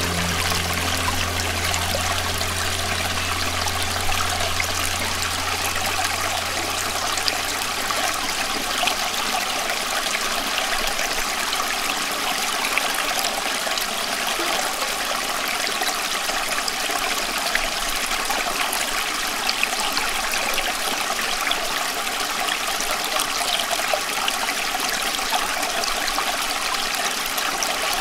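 Steady rushing, trickling sound of running water with fine scattered ticks. A low hum fades out over the first twelve seconds or so.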